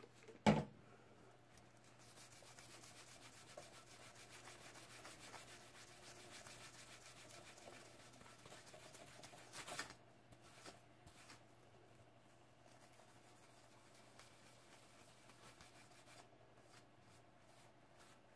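A cloth rag rubbing faintly over a painted stainless-steel tumbler, wiping off paint with rubbing alcohol. There is a short knock about half a second in, and the rubbing grows fainter after about ten seconds.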